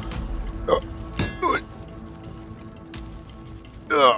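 Dramatic soundtrack music holding a steady drone, cut by a few short pained grunts and gasps from a man struck by arrows, with a louder, falling cry of pain at the very end.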